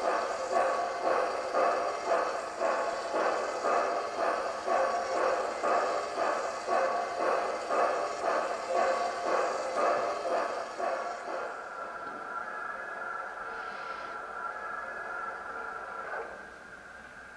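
Steam-engine exhaust chuffs from a model's Quantum Titan sound decoder, played through small onboard speakers. The beats come about two a second and fade away over the first two-thirds. A steady high-pitched sound then holds on after the chuffing stops.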